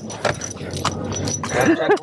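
A bunch of keys jangling and rattling as they are shaken in a hand inside a moving vehicle's cab, followed by two short vocal whoops near the end.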